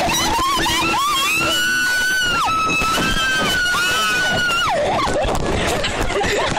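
Banana-boat riders screaming: high, long-held shrieks of a second or two each, two voices at times at once, falling off near the end. Under them runs a steady rush of wind on the microphone and water spray from being towed at speed.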